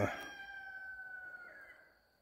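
A rooster crowing faintly: one long call that slowly falls in pitch and fades out near the end.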